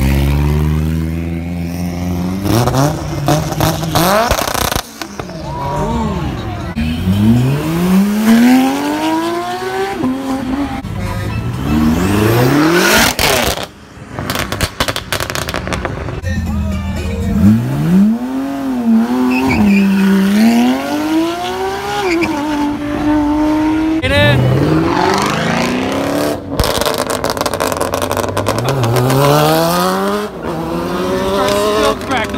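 Performance car engines revving and accelerating away one after another, the engine pitch repeatedly climbing and falling with blips and gear changes.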